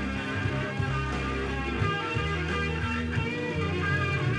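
Instrumental passage of a rock song, with electric guitar over held bass notes and no singing.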